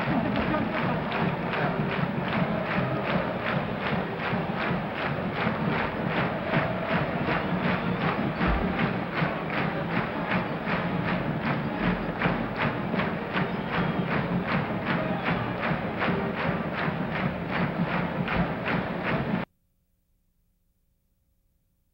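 Band music with a steady drum beat, cutting off suddenly near the end.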